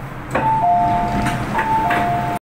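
MTR train door chime: a two-note ding-dong, high then low, sounding twice over the train's steady hum, signalling the doors opening at the station. A click just before the first chime is the door mechanism.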